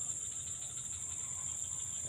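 Steady, high-pitched chorus of insects chirring without a break, over a faint low rumble.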